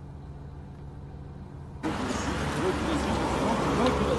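A car engine idling, heard from inside the cabin as a steady low hum. About two seconds in it cuts off suddenly to a louder outdoor scuffle with handling noise and raised voices.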